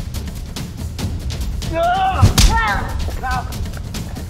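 Action-scene background music with a fast percussive beat. About two seconds in, a man cries out in a long, wavering shout, with a heavy thud landing in the middle of the cry.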